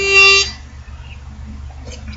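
Harmonica sounding a held chord that cuts off about half a second in, the close of a tune, followed by quiet room tone with a low hum.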